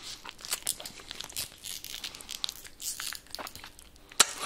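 Paper fast-food packaging rustling and crinkling, a run of irregular short crackles and light crunches.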